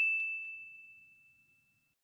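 A single high, bell-like ding sound effect, struck just before and ringing on as one pure tone that fades away within about a second and a half.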